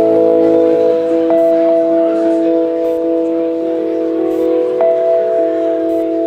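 Live rock band playing a slow, spacey passage: long held notes that ring like chimes and shift pitch slowly, with a new note struck now and then and a light cymbal tick about every second and a half.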